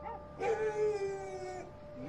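A single drawn-out cry, held on one slightly falling pitch for about a second.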